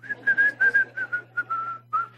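A man whistling a single drawn-out note that drifts slowly lower with small wavers and breaks briefly near the end.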